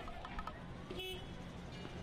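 Street commotion over a steady low rumble, with a short horn-like toot about a second in.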